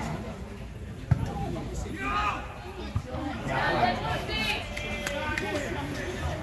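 Spectators' voices shouting and talking over steady outdoor background noise, with a sharp knock about a second in and a smaller one near three seconds.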